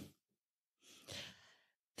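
Near silence, broken about a second in by one faint breath of a woman reading aloud, taken in the pause between sentences.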